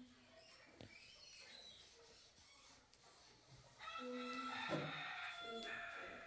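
A rooster crowing once, faintly, a single long call of about two seconds starting about four seconds in.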